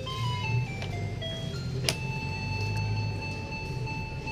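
Coin-operated chasing-light fruit slot machine playing its electronic beeps: a descending run of stepped beeps over about two seconds, a click, then a steady two-note electronic tone held for the last two seconds.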